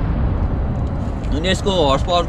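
A steady low outdoor rumble. A man's voice comes in about one and a half seconds in.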